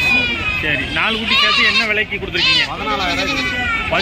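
Goats bleating amid people talking, with a few sharp, high calls in the second half.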